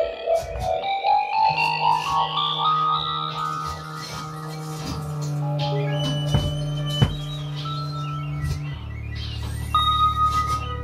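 Live experimental music from saxophone, electric guitar and synthesizer: a line of notes climbs in pitch over the first three seconds above a sustained low drone, with two sharp clicks about six and seven seconds in.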